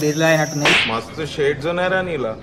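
A person's voice with a wavering pitch over a steady hum and high tone, broken about two-thirds of a second in by a short whooshing swish, then more wavering voice.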